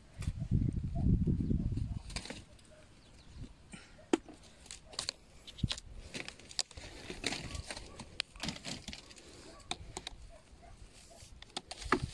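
Low rumbling handling noise for about two seconds, then scattered light clicks and taps of hands picking snails off plastic crates.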